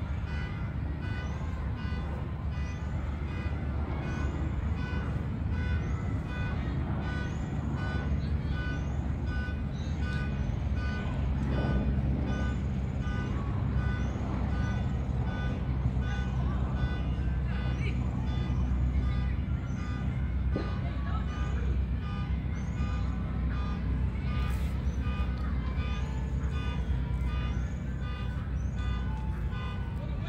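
A vehicle horn held on continuously, one steady blare of several tones that does not break, over a low rumble.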